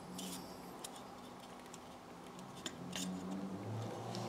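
Faint clicks and light scraping of small tape-lined pliers working the dented tinplate body of a Hornby O gauge engine, a few separate clicks spread through.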